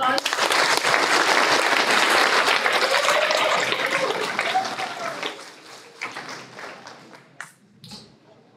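Audience applauding, loud for about five seconds, then fading out into a few scattered claps.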